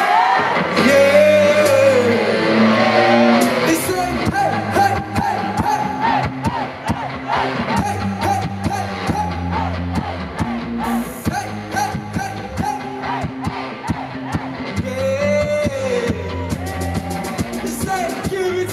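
Live band music with a male lead singer: a sung melody over steady bass-guitar notes and percussion, with a second vocal phrase coming in near the end.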